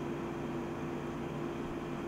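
Steady air-conditioner noise in the room: an even hiss with a faint steady hum.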